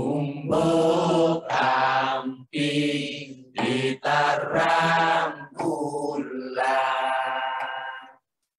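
A low solo voice chanting in a string of held phrases, each about a second long, with short breaks between them.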